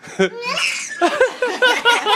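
A baby and an adult laughing together: after a short spoken "no", a quick run of short, high laugh pulses starts about a second in.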